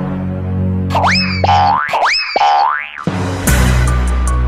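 Loud music and cartoon sound effects played through a portable party speaker. A sustained low drone gives way to two boing-like swoops about a second apart, then a rising glide. A sudden burst comes near the end.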